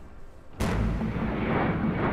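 A sudden heavy boom about half a second in that runs on into a steady roar: a jet airliner passing low overhead.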